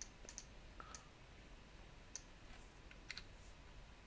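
Near silence broken by about half a dozen faint clicks from a computer mouse and keyboard as text is selected and deleted in an editor.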